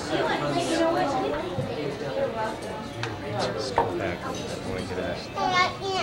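Indistinct chatter: several voices, adults and children, talking over one another in a busy room, with one sharp click or knock about two-thirds of the way through.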